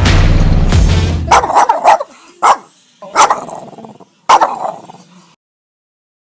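Loud bass-heavy intro music stops about a second in, followed by a handful of short, loud, sharp calls about a second apart, each dying away, then silence.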